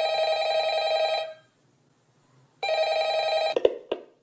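Telephone bell ringing twice, each ring about a second long with a silent pause between them, followed by a few short clicks near the end.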